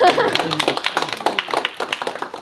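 A small audience applauding, with laughter near the start.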